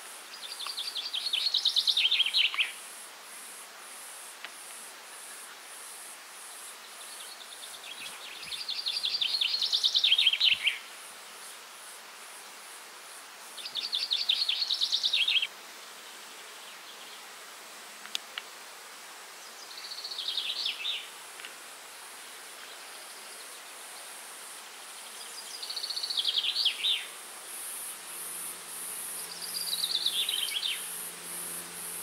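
Honeybees buzzing steadily around a row of hives, under a high, fast-pulsing insect call. A songbird repeats a short trilled song phrase about every six seconds, each lasting about two seconds and ending in a falling flourish; these phrases are the loudest sounds.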